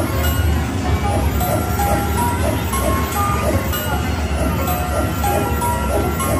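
Slot machine's hold-and-spin bonus music: a tinkling run of short chiming notes, several a second, over steady casino crowd noise.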